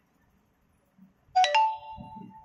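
A short electronic chime sounds about one and a half seconds in, a lower note stepping up to a higher one that rings on and fades over about a second.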